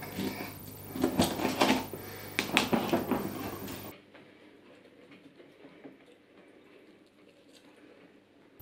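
Kitchen knife cutting an orange on a plastic chopping board: several sharp knocks and crackly cutting sounds over the first half. About halfway through the sound drops abruptly to near quiet, leaving only faint ticks while an orange half is twisted on a plastic reamer juicer.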